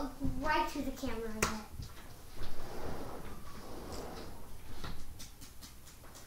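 A child's voice making wordless sounds for the first second and a half, ending on a held tone. After that come soft shuffling and a few light knocks.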